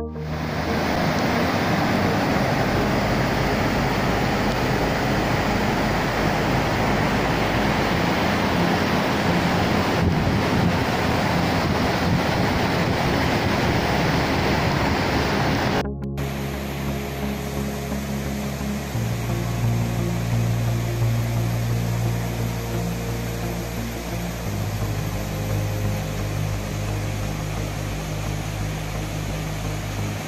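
Steady, loud rushing of falling water that cuts off suddenly about halfway through. A softer rush of a mountain stream follows, with sustained synthesizer chords underneath.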